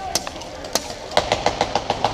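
Airsoft gunfire: a couple of single shots, then from about a second in a rapid full-auto string of sharp cracks, about seven a second.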